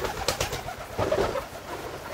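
Low bird calls, two of them about a second apart.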